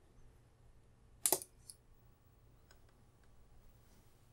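A single sharp mechanical click about a second in, then a fainter click just after and a few faint ticks, over a low steady room hum.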